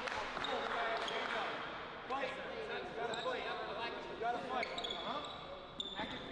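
A basketball being dribbled on a hardwood gym floor, with men talking faintly in the background.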